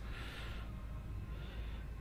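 Quiet room tone: a low steady hum with faint hiss, nothing standing out.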